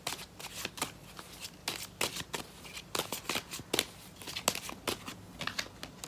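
A tarot deck being shuffled by hand: a run of quick, irregular card flicks and slaps as cards are passed from one hand to the other.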